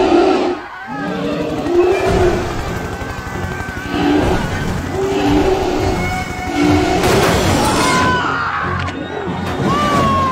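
Film soundtrack: dramatic score mixed with a giant creature's repeated roars over the fast chop of a helicopter's rotor as the helicopter closes in.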